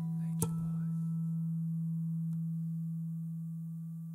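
Final held note of a jazz ballad: a steady low tone sustained throughout, with one last plucked guitar note about half a second in ringing over it as the piece closes.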